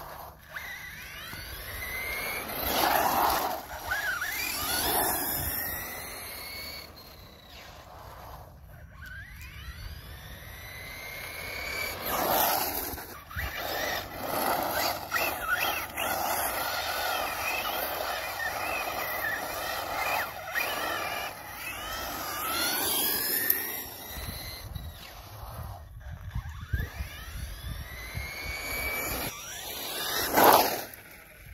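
Radio-controlled buggy's motor whining, rising and falling in pitch again and again as it accelerates, brakes and passes on asphalt. The loudest passes come about 3, 12 and 23 seconds in.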